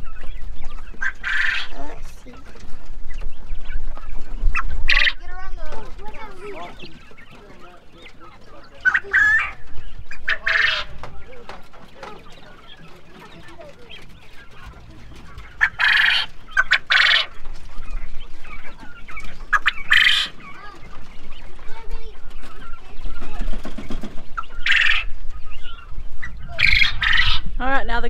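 Penned coturnix quail calling: short, sharp calls repeated every few seconds, with a quieter stretch in the middle.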